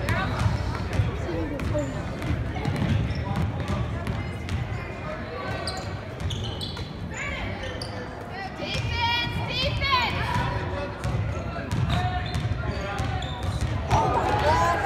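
Basketball bouncing on a hardwood gym floor during play, repeated thuds that echo in the hall, with spectators' voices throughout.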